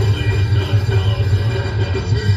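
A heavy metal band playing live: distorted electric guitar and bass guitar over a drum kit, loud, with a dense low rumble dominating the sound.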